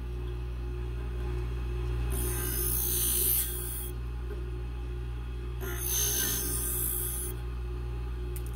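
New Tech electric scissor sharpener running with a steady hum while a scissor blade clamped in its spring-loaded bracket is pressed against the spinning sharpening wheel. Two high grinding passes of about a second and a half each come about two seconds in and again near six seconds.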